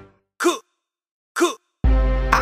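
A trap beat breaks off, leaving two short shouted vocal samples about a second apart, each falling in pitch, the 'aye' chant of the track. Near the end the beat comes back in with a deep 808 bass.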